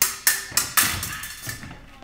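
Fencing blades clashing: a quick run of sharp metallic strikes in the first second, each with a brief ring, then fainter contacts.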